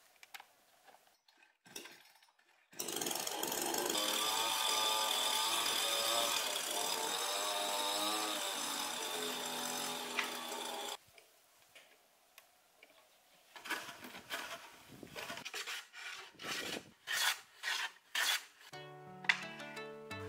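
Small chainsaw starting up and cutting through a wooden board for about eight seconds, its whine wavering in pitch under load, then cutting off abruptly. Later comes a series of short rasping strokes, and plucked-string music comes in near the end.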